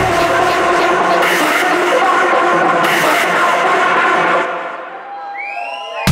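Techno played over a club sound system in a breakdown: the kick drum and bass are cut out, leaving synth chords. About four and a half seconds in, the music thins and quietens to a rising synth sweep, and the kick and bass come back in right at the end.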